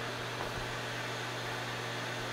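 Steady background machinery noise: a low, even hum with a constant hiss over it, unchanging throughout.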